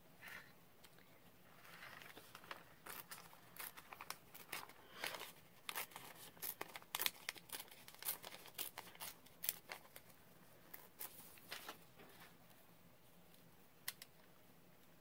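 A thin printed dictionary page being torn by hand and handled, heard faintly as a string of short rips and paper crinkles from about two seconds in until about ten seconds in.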